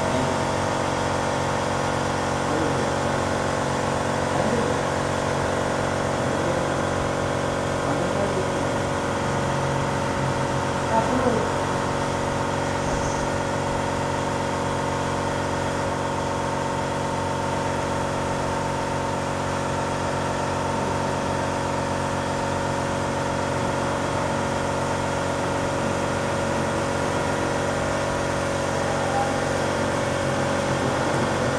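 A steady mechanical drone, like an engine or motor running without change, with faint voices in the background.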